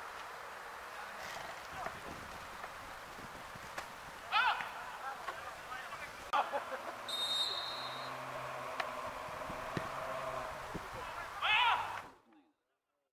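Players shouting on an outdoor football pitch, with short calls a few seconds in, again at about six seconds and again near the end, over a steady background hum of the ground. A short, high whistle blast lasts about a second, around seven seconds in.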